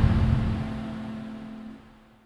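The end of a TV programme's opening theme music fading out: a held low note under a dying wash of sound, which falls steadily in level and dies away just before the end.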